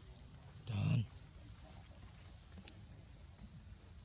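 A macaque gives one short, low grunt a little under a second in.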